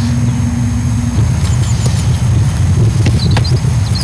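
Wind buffeting the microphone as a loud, steady low rumble. A little after three seconds in come two short thuds of a football being struck and caught.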